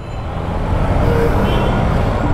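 Motorcycle riding in city traffic: engine, wind and road noise rising steadily as the Honda CBR150 pulls away.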